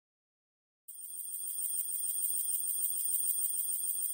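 An alarm ringing in a rapid even pulse, about six strokes a second, with a steady high ring over it. It starts about a second in and grows steadily louder.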